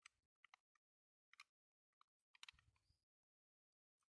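Faint, scattered clicks and taps of small plastic parts knocking against a die-cast toy car body as a door piece is worked into place, about half a dozen short clicks with a brief scraping cluster about two and a half seconds in.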